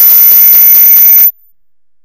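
A very loud, harsh, distorted burst of noise with a high steady ringing tone over it, clipped at full level, which cuts off suddenly a little over a second in.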